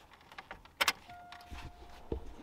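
A sharp click from the cabin controls of a MK3 Toyota Supra, then a faint steady warning tone, as the pop-up headlights are switched with the key in. The headlights do not respond, which the owner puts down to a faulty contactor in the headlight circuit.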